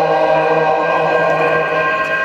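Several men chanting a ginei (shigin, recited Japanese poetry) in unison, holding one long, steady note.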